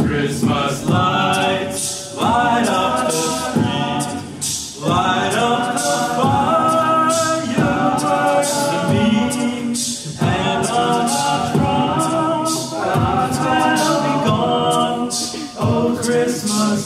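An a cappella vocal group singing in close harmony, holding and changing chords with no clear words, over a steady beat of vocal percussion.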